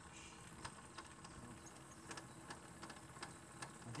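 Near silence, with faint, scattered light clicks.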